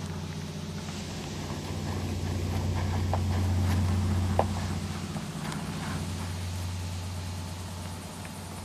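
A steady low hum that swells in the middle and then eases off, with a few faint short clicks.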